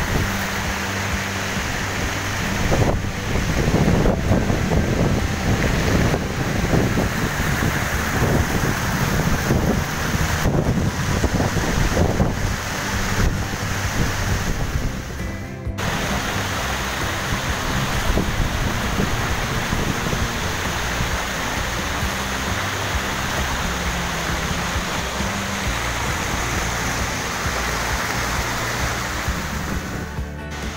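Heavy rushing water from a waterfall and its swollen river, a steady wash of noise, with background music and its low bass notes underneath. The sound dips briefly about halfway through.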